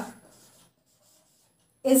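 Felt-tip marker writing on a whiteboard, very faint strokes in the gap between a woman's words.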